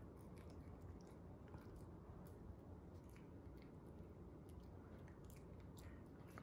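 A small dog chewing and licking soft cake off a plate: faint, irregular little clicks and smacks.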